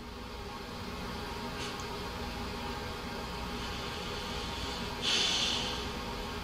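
Steady low room hum, and about five seconds in a woman takes one audible breath in.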